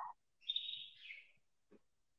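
A faint high-pitched chirp lasting under a second, dipping slightly in pitch at its end: a bird call in the background.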